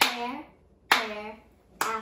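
A child claps about once a second and chants a word with each clap, part of a repeating pattern of fruit names.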